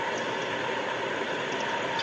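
Steady background noise in a pause between words: an even hiss with a faint steady hum, no changes or sudden sounds.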